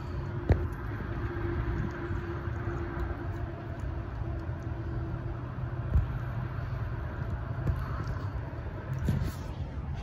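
Steady low vehicle rumble with a steady hum through the first half, and two sharp knocks, one about half a second in and one near six seconds.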